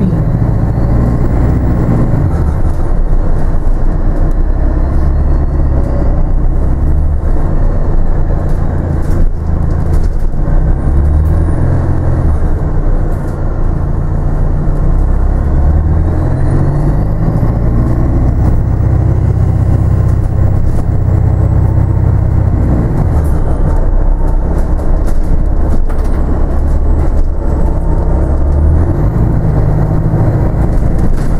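Onboard a city bus in motion: a loud, steady drivetrain hum whose pitch shifts in steps as the bus speeds up and slows, with a faint high whine rising in pitch a few times.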